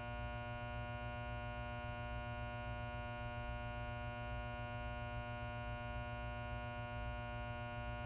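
Steady electrical buzz like mains hum, with many evenly spaced overtones and a flickering low end, that cuts off suddenly at the end. It is a staged broadcast malfunction: the live feed failing to colour bars.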